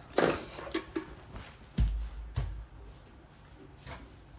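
Handling noise from a metal kettle being moved and set down: a scrape and a few clicks, then two dull thumps about two seconds in.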